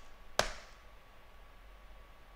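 A single sharp keystroke on a computer keyboard, the Enter key pressed once about half a second in, followed by faint low hum.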